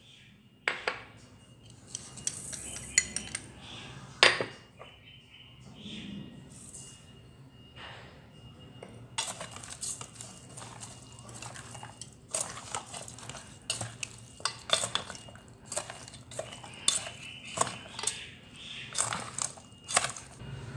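Chopsticks stirring chicken pieces and seasonings in a metal pot, clinking and knocking against the pot's sides at irregular intervals. The knocks come sparsely at first and grow busier about halfway through.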